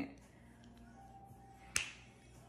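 Low, quiet room tone broken by a single sharp click near the end.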